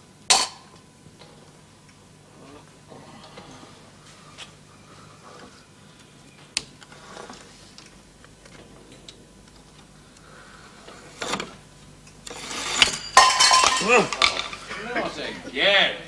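A few light clicks and clinks of small objects being handled in a quiet room. From about twelve seconds in, a short struggle: a man's gasps and grunts with rustling bedding, the loudest part.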